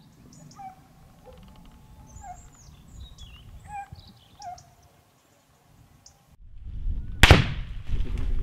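Faint scattered animal calls and chirps carrying across open scrub, then, after a brief break, a louder background and a single sharp, loud crack with a short ringing tail about seven seconds in.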